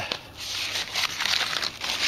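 Aluminium foil crinkling and rustling as a hand pulls open a double-wrapped foil packet.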